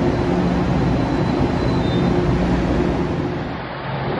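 Metro-North Budd M3A electric multiple-unit train moving along the platform: a steady low rumble with a hum, dipping briefly near the end.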